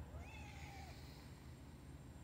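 A black-and-white tuxedo cat gives one short, faint meow that rises and falls in pitch: a hungry stray asking to be fed.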